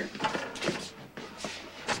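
Footsteps and shuffling of several people walking into a small room, a series of short knocks about every half second.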